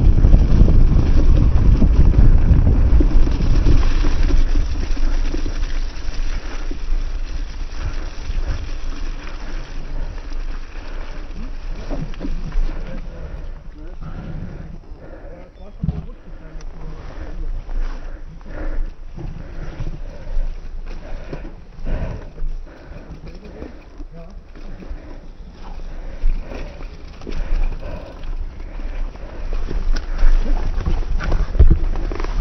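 Wind rumbling on the camera microphone as a mountain bike rolls down a muddy forest trail, loud for the first dozen seconds. It then falls quieter, with scattered knocks and rattles of the bike over rough ground.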